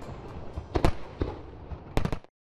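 Aerial fireworks bursting: several sharp bangs, the loudest a little under a second in and another near the end, over continuous crackle.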